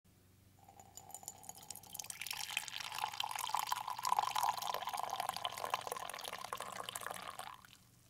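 Liquid poured in a stream into a ceramic mug, starting about a second in, growing louder, then stopping just before the end. A faint steady hum lies underneath.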